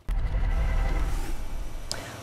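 Low, steady outdoor rumble picked up by a live remote microphone. It comes in abruptly as the feed opens and eases off toward the end, with a short click just before the end.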